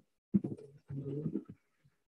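A man's low voice making short, quiet, murmured hesitation sounds, in three brief bits, heard over a video-call line.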